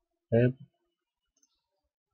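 One short spoken syllable in a man's voice, then near silence.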